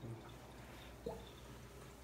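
Faint room noise with a single short drip of liquid about a second in.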